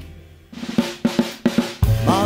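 A band chord dies away, then a solo drum-kit fill: a quick run of snare and bass drum strikes. The full band comes back in near the end.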